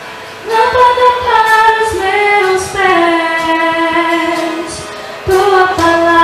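A woman sings a slow worship song solo into a handheld microphone, holding long notes. There is a short break at the start, and the singing comes back about half a second in.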